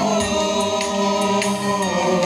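Gospel song sung by several voices through microphones, with long held notes and a few light percussion taps.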